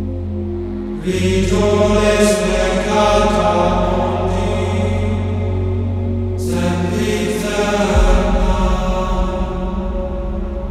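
Chanted vocal music in the style of Gregorian chant over a low drone. Sung, held phrases come in about a second in and again after about six seconds, and the drone shifts about eight seconds in.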